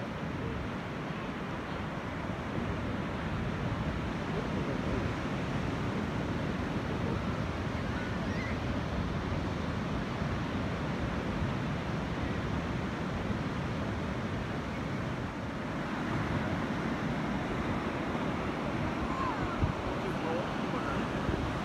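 Ocean surf breaking and washing up a sandy beach, a steady rush of waves with wind buffeting the microphone, a little louder about three quarters of the way through.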